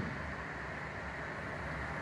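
Steady, low background hiss of the room, with no speech.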